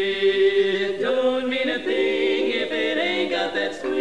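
Women's barbershop quartet singing a cappella in four-part close harmony. A held chord breaks about a second in into moving parts that step through a series of changing chords.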